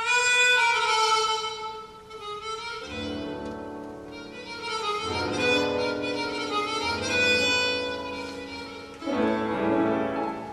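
Chromatic harmonica playing a tango milonga melody over grand piano accompaniment. It opens on a long held note that slides down a little, the piano comes in with fuller chords about three seconds in, and a strong new harmonica phrase starts near the end.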